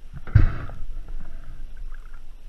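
Water lapping and sloshing against a camera held at the water's surface, with one louder splash a little under half a second in.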